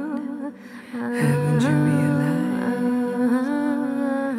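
A voice humming a slow, wordless melody in long held notes, with a short breath-like pause in the first second; a second, lower held note sounds alongside it for about a second.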